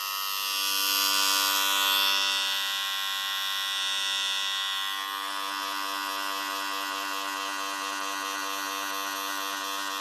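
Corded electric hair clippers running with a steady buzz, louder for the first few seconds as they are worked over a short buzz cut.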